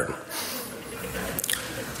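A man's breath and small wet mouth clicks picked up close by a lectern microphone in a short pause between spoken sentences, with a brief hissing intake of breath near the start.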